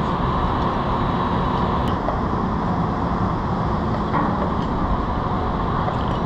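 Steady machinery noise on a job site: an even, unbroken drone with no pitch changes or pauses.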